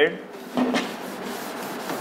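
A blackboard duster rubbing across a chalkboard, wiping off chalk writing, with a steady scrubbing noise.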